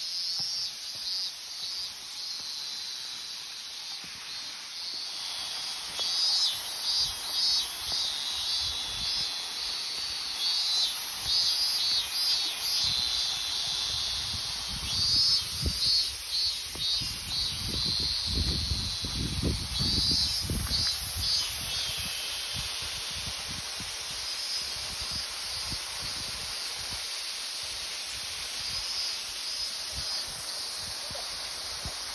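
Cicadas singing in the trees: a high, pulsing buzz that swells and fades in repeated phrases over a steady high hiss. A low rumble comes in for a few seconds past the middle.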